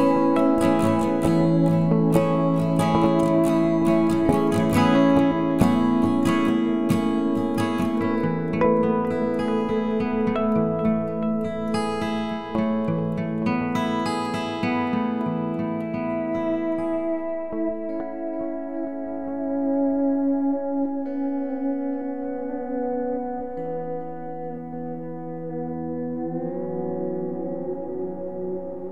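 Background music: strummed acoustic guitar, thinning out to held, sustained notes in the second half and growing quieter toward the end.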